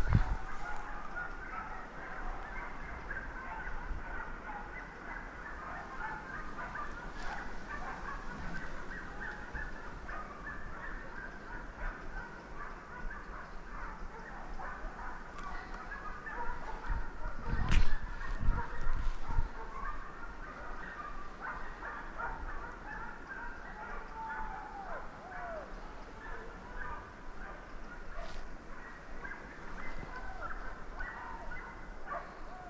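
A pack of hunting hounds baying in the distance, a dense continuous chorus of overlapping short cries, the dogs giving voice on a wild boar's trail. A dull close thump, with a few smaller ones, a little past the middle is the loudest sound.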